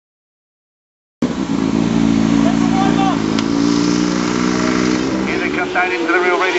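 600cc inline-four racing motorcycles running hard at high revs, cutting in suddenly about a second in. The engine note drops in pitch about five seconds in as the bikes come off the power.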